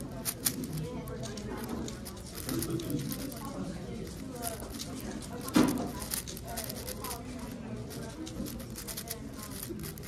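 A plastic 6x6 speed cube being turned fast by hand: a rapid, uneven run of small clicks from its layers, with one louder knock a little past halfway, over the chatter of a crowded hall.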